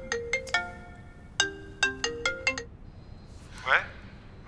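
Smartphone ringtone: a bright plinking melody of short notes, played in two phrases with a pause between. A short falling vocal sound comes near the end.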